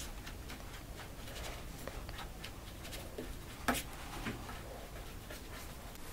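Faint, scattered light clicks and scrapes of a spoon spreading wet poppy-seed filling over phyllo in a baking pan, with one slightly sharper tap a little past the middle.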